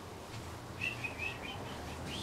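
A small bird chirping: a quick run of about five short, high chirps near the middle.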